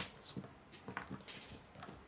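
Small plastic LEGO parts clicking and tapping on a wooden tabletop as a rubber-tyred wheel is pressed onto its axle: one sharp click at the start, then a few faint taps.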